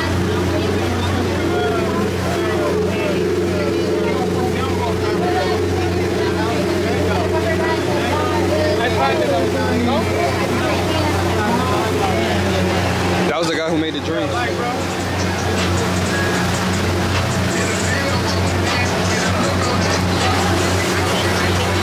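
Steady low drone of a boat's engine as it cruises, under music and indistinct voices, with a brief dropout about two-thirds of the way through.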